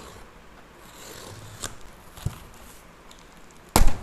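Scissors slitting the packing tape on a cardboard box, with a scratchy cutting noise and a couple of sharp clicks. Near the end a short, loud burst of noise as the box flaps are pulled open.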